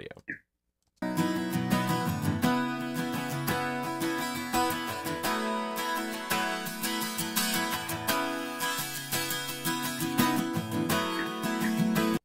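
Recorded acoustic guitar track playing back through an equalizer, starting about a second in. Midway a deep low-mid cut around 150 Hz is swept in and back out, thinning the low end. The overall volume stays much the same because the EQ's auto gain makes up the level.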